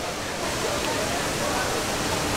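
Steady rushing background noise that holds level throughout, with faint distant voices.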